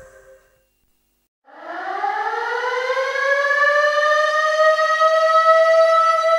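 A reggae track fades out into about a second of silence. Then a siren sound effect winds up from a low pitch and settles into a steady high wail, opening the dub version.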